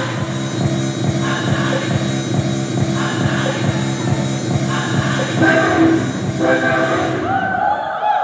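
Dance-fitness workout music with a steady beat over sustained bass notes, stopping about seven seconds in, followed by a voice.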